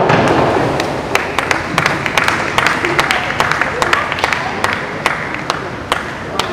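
A diver's entry splash into the pool at the very start, followed by scattered hand clapping from a few spectators, with voices under it, in an echoing indoor pool hall.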